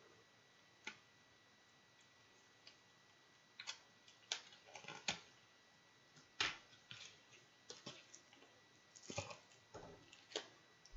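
Faint, scattered clicks and crinkles of fingers picking at the seal of a small cigar pack, sparse at first and then coming in little clusters.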